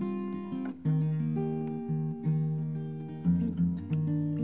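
Solo acoustic guitar playing the opening of a slow song with no singing yet: a new chord is struck about every second and left to ring.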